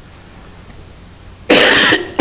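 A woman coughs loudly and suddenly about one and a half seconds in, after choking on her own saliva mid-sentence.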